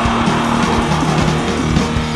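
Live metal band playing: loud, heavily distorted guitars over bass and drums, with regular drum hits throughout.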